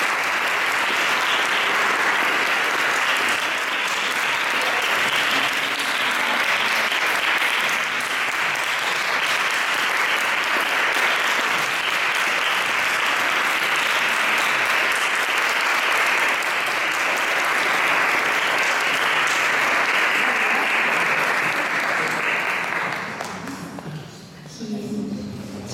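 Audience applauding steadily, fading out near the end.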